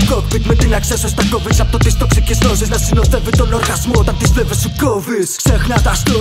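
Hip hop track: rapping over a beat with a heavy bass line. The bass drops out for a moment about five seconds in, then comes back.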